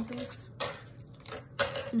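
Tarot cards being handled and drawn: two short, sharp rustling snaps about half a second and a second and a half in.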